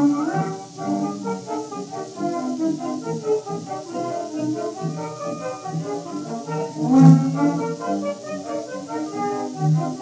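A 1917 acoustic 78 rpm recording of a light theatre orchestra playing a medley of stage-show tunes. It sounds thin, with no bass and a steady surface hiss. A rising run opens the passage, and a loud accented chord comes about seven seconds in.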